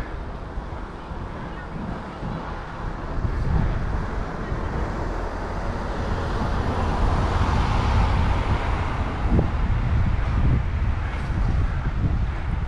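Wind buffeting the microphone of a head-mounted camera on a moving bicycle: a steady rumble and rush that grows louder from about three seconds in.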